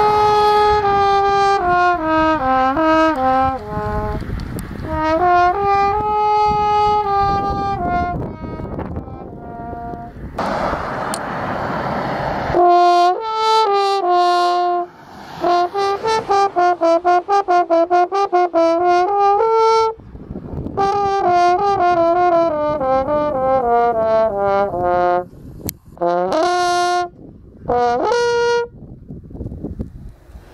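French horn played solo outdoors: phrases of held notes, then a run of quick repeated tongued notes, about four a second, and a descending line of notes. A couple of seconds of rushing noise break in near the middle.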